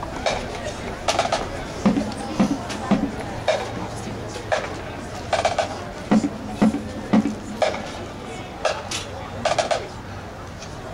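Marching band percussion playing sparse hits in an uneven rhythm, about two a second: low drum strokes mixed with sharp, wood-block-like clicks that ring briefly.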